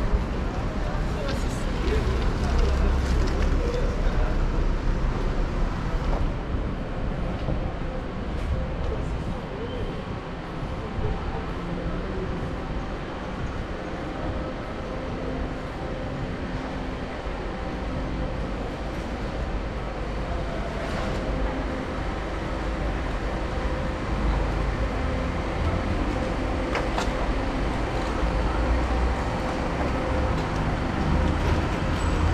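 City street ambience: steady traffic noise with low rumble, and voices of people in the street in the background.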